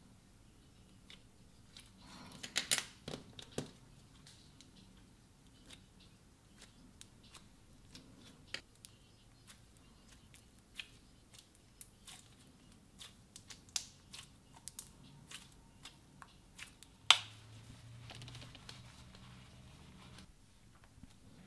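Clear slime squeezed and folded by hand, giving scattered small sticky clicks and pops. There is a burst of crackling about two to four seconds in and one sharp pop near the end.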